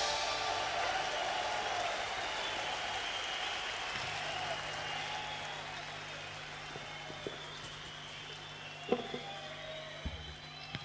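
Rock concert crowd applauding and cheering after a song ends, slowly dying away. A steady low hum from the amplifiers comes in about four seconds in.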